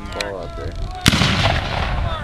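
A Civil War-era muzzle-loading field cannon fires once, about a second in: a sharp blast followed by about a second of rumbling echo across the field.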